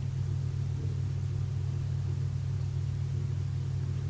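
A steady low-pitched background hum, constant in pitch and level, with no other distinct sounds.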